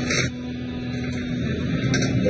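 Steady industrial machinery hum of a waste-incineration plant, with a held low tone that drops out about one and a half seconds in.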